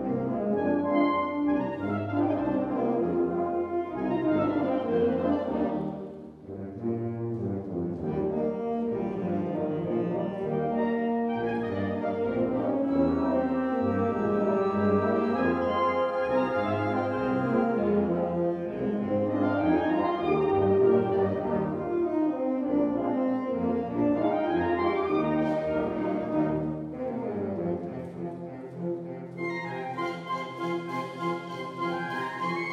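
Italian wind band playing a symphonic march live, brass to the fore. The sound drops briefly about six seconds in, then the full band comes back in.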